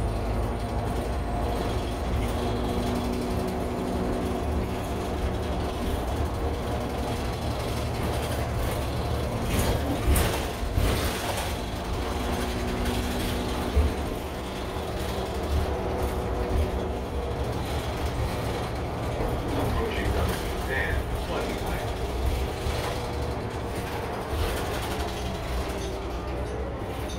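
Interior of a moving city transit bus: the engine and drivetrain running with a steady whine and rattling from the cabin fittings. There are a few sharper knocks about ten to fourteen seconds in.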